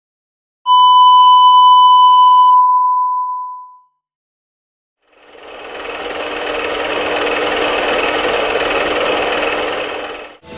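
A steady test-card beep tone starts about half a second in and fades away after about three seconds. After a second of silence, a film projector's running noise, with a steady hum, fades in and runs on steadily.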